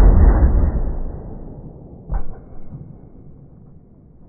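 Slowed-down sound of a Greener harpoon gun shot and its one-pound harpoon striking water jugs. It is a deep, drawn-out rumble, loudest at the start and fading over about three seconds, with a second dull thud about two seconds in.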